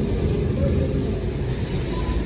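Steady low rumble and noise of a shopping cart's wheels rolling over a hard store floor, with faint store background sound.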